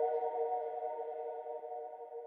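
The ringing tail of a chime jingle: a held chord of bell-like tones slowly fading out.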